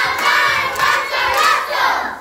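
A group of young children singing out loudly together in unison, the voices stopping near the end.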